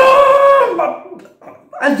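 A man's wordless, high-pitched vocal cry, held for about a second, with speech starting again near the end.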